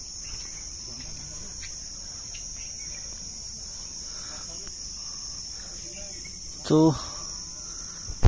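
Steady, high-pitched chirring of an insect chorus that holds one even pitch without a break.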